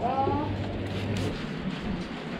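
A woman's voice briefly telling diners to sit wherever they like, followed by the steady background noise of a restaurant dining room.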